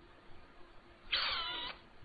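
A single high-pitched call, falling in pitch and lasting about half a second, a little past the middle.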